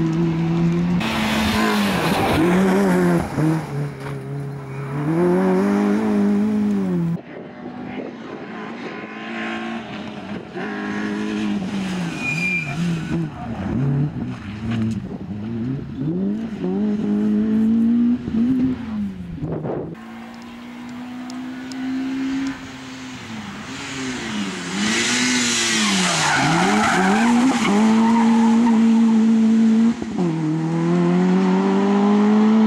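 Citroen C2 rally car's four-cylinder engine revved hard, the note climbing and dropping sharply through gear changes and lifts as it takes the corners. Tyre squeal and scrabble rise over the engine near the start and again for a few seconds near the end.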